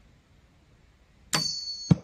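Doom Armageddon crossbow firing with a sharp snap, followed at once by a high, steady whistle from the whistling arrowhead in flight. The whistle cuts off after about half a second with a loud thud as the arrow strikes the target.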